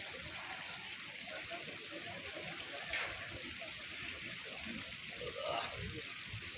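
Steady trickle of running water, with faint voices in the background and a short tick about three seconds in.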